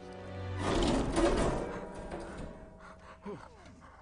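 A heavy metal floor hatch being hauled open, heard as a loud rushing clatter that swells about half a second in and dies away over the next second. Sustained orchestral film music plays underneath.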